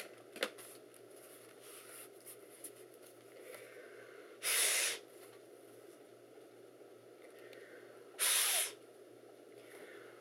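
Two short blasts of air, each about half a second, a few seconds apart, blown into an old laptop's fan vent to clear dust out of it.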